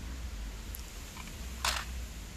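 Plastic toy vehicles handled in a plastic mesh basket: a faint tick, then one short clatter near the end as a toy bus goes in among the others, over a low steady rumble.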